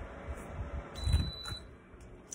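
Ice being chewed close to the microphone with the mouth closed: low, muffled thumps, loudest about a second in, with a small click soon after. A faint, thin beep-like tone sounds for about half a second in the middle.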